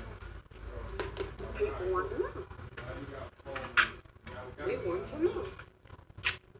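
Faint voices from a television playing in a room, with a few light clicks.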